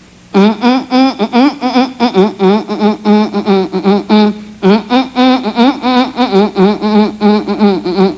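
A ventriloquist humming a quick, wavering tune in his dummy's voice: a run of short buzzy notes with a brief break about halfway through.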